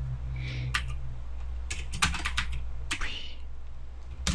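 Computer keyboard being typed on: a few scattered key clicks, bunched most closely about halfway through, over a low steady hum.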